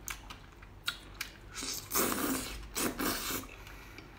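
Close-miked eating of skewered seafood in sauce: a few sharp wet chewing clicks, then two louder slurps about two and three seconds in.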